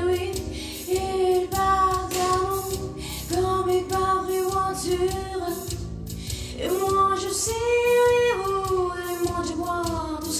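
A young woman singing a French chanson solo into a handheld microphone over instrumental accompaniment. She holds her notes with a wavering vibrato, and about seven seconds in she rises to a long higher note.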